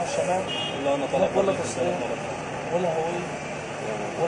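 Men talking in conversation: speech only, over a steady background hum.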